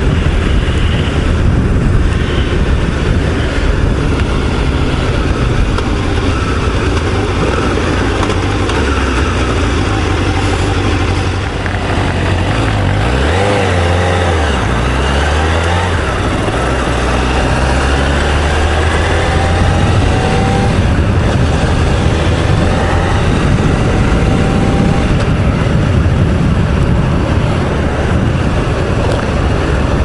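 Honda CBR1000F's inline-four engine running while riding on a city road, with wind rush on the helmet microphone. Around the middle the engine note falls and climbs again through a change in speed and gear, then runs on steadily.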